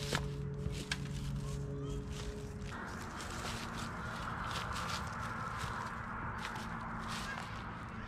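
Handling noise from baiting a fishing hook with a piece of Kool-Aid-soaked hot dog: scattered light clicks and rustles. From about three seconds in, a steady noise haze sits underneath.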